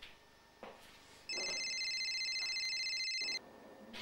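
A phone ringing: one electronic ring of about two seconds, a high trilling tone that starts a little over a second in and cuts off suddenly.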